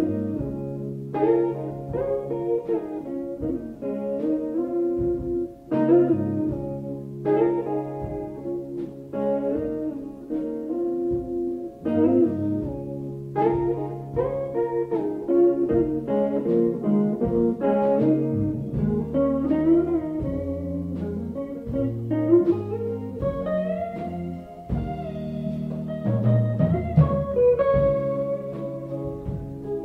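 Live jazz instrumental: electric guitar playing rhythmic chords and melody over a bass line, with sharp chord accents coming about every second. It has the dull, worn sound of an old, much-played cassette tape.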